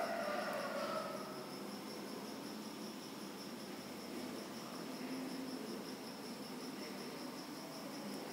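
Faint room hiss with a steady, high-pitched, finely pulsing whine running throughout.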